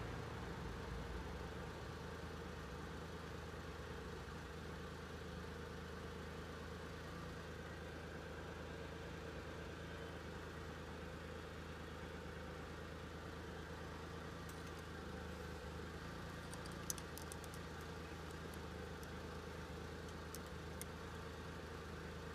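Honda CBR600F (PC25) inline-four engine idling steadily at an even, unchanging speed, heard close up at the engine with its oil filler cap off.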